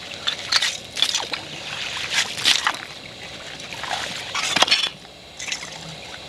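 Slushy water and loose chunks of broken ice sloshing and clinking in a hole cut through ice as a stick is worked around in it, in a run of short, irregular splashes with the loudest about four and a half seconds in.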